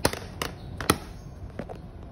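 Plastic Blu-ray case clicking and knocking as it is turned over in the hand and laid on a table. Three sharp clicks come in the first second, the third the loudest, then a couple of fainter ones.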